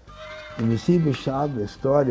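A man and a group of young boys calling out loudly together. Their voices rise in pitch in about three upward sweeps over a steady lower man's voice. The sound starts abruptly at the beginning.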